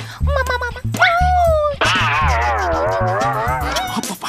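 A voiced cartoon dog meowing like a cat: a few short meows, then a rising call and a long wavering, howl-like meow, over bouncy background music with a steady bass beat.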